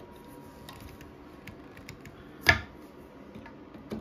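A screwdriver clicking and scraping against the head of a rusted toilet-seat hinge bolt, the corrosion holding it frozen in place. There are small scattered ticks throughout, and one loud, brief sharp sound about halfway through.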